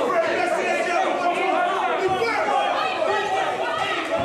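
Several people talking and calling out at once, their voices overlapping into a steady chatter.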